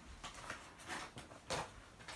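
Faint handling sounds: a few brief light knocks and rustles as a plastic-packaged charger and the contents of a backpack are moved by hand, the loudest about one and a half seconds in.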